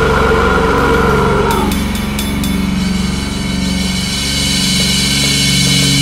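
Deathcore band recording: heavily distorted low guitar and bass held on a sustained chord that rings on steadily. A higher held sound above it cuts off about a second and a half in, with a few sharp ticks just after.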